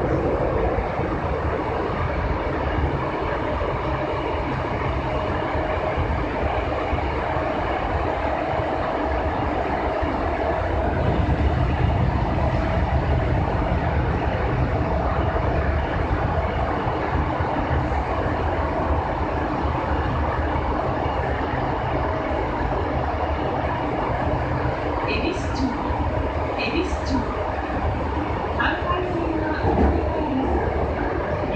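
5300 series electric train running through a subway tunnel, heard from inside the front car: a steady rumble of wheels and running gear with a faint steady whine. The rumble grows louder about a third of the way in. A few brief high squeaks come near the end.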